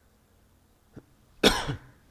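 A single short cough about one and a half seconds in, just after a faint click.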